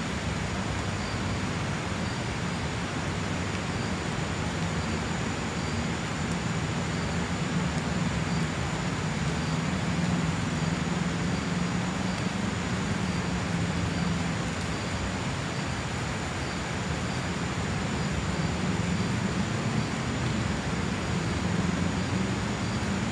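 A steady low droning rumble under an even hiss that holds level throughout, with a faint steady high tone above it.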